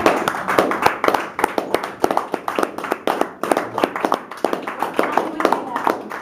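A quick, irregular run of sharp taps or clicks, several a second, mixed with a voice.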